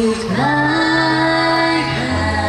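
Mixed a cappella trio, two women and a man, singing a slow love song in close harmony through microphones: one held chord, then a new chord sliding in about a third of a second in and held for more than a second.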